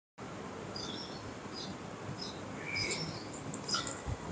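Faint, short high-pitched chirps from small birds, repeated at irregular intervals over a steady background hiss.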